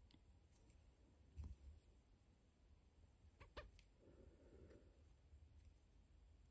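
Near silence: room tone, with a few faint ticks from needle and thread being handled in needle lacework, about a second and a half in and again around three and a half seconds.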